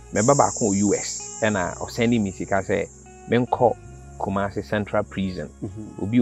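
A man talking over a high, steady insect trill. The trill is loud in the first second or two, then fades to a faint continuous drone behind the voice.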